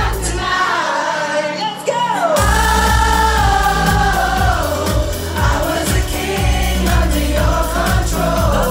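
Live electronic pop song played loud through a club PA, with sustained, gliding sung vocals over synths. The bass and beat drop out for about a second and a half about a second in, then come back in full.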